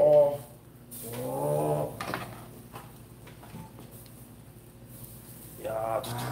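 Drawn-out wordless 'ooh' exclamations at the start and again about a second in, then faint sizzling of thick hanwoo tenderloin steaks just laid on a hot tabletop grill.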